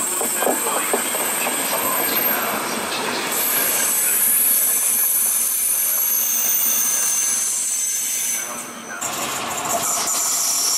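ČD express passenger coaches rolling past with a loud rumble and clicks of the wheels over rail joints. From about three seconds in, a high-pitched steady wheel squeal of several tones joins in and stops just before the end.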